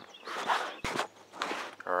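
Scraping and handling noises with one sharp click just before the middle, as the brake caliper is set back over the new pads and rotor.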